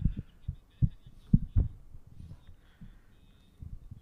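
A few dull, low thumps at uneven intervals, loudest about a second and a half in.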